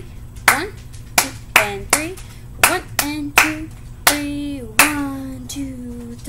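Hand claps beating out a rhythm in 3/4 time, a series of sharp claps with a woman counting the beats aloud ("one, two and three") over them; the last counts are drawn out longer near the end.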